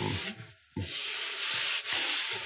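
A bare palm rubbing across the unfinished red spruce top of a small-body acoustic guitar, giving a dry, hissing swish. There are two strokes: a short one, a brief pause about half a second in, then a longer one.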